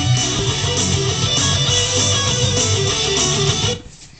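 Electric guitar playing a fast lead in recorded music played back from a video; it cuts off abruptly near the end.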